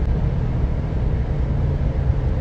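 Steady low rumble of a car's cabin while driving, heard through a phone's live-stream recording.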